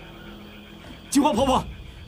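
Quiet room tone for about a second, then a man's voice breaks in with a sharp, angry outburst just past the middle.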